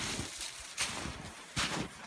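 Footsteps crunching in deep snow, a few uneven steps, over the steady rush of a creek running freely after the ice has come off.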